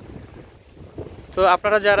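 Wind buffeting the microphone, a low rumble that fills a pause in the talking before speech resumes about a second and a half in.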